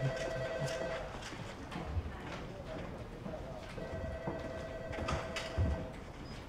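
Telephone ringing with a warbling two-tone ring: one ring ends about a second in and a second, longer ring sounds near the end, with a few soft footstep thuds underneath.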